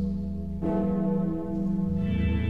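Introduction to an Armenian church hymn: a bell struck once about half a second in, ringing out and fading over a steady sustained drone.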